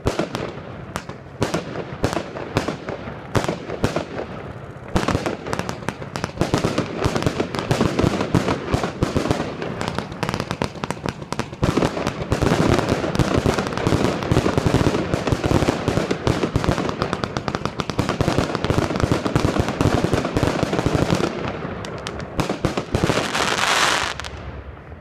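107-shot single-ignition firework cake firing. It starts with separate bangs, two or three a second, then from about five seconds in it becomes a fast, dense barrage of shots that thickens further about halfway and swells to a loud final volley near the end.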